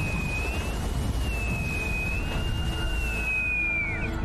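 Boatswain's call (bosun's pipe) sounded over a ship's loudspeaker: one long, high, wavering whistle that drops away at the end. It pipes the crew to attention before an announcement. Beneath it runs a steady low rumble.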